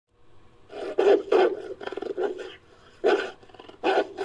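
Growling and snarling sound effects for a wolfdog creature: a string of about six short, harsh bursts, the loudest about a second in.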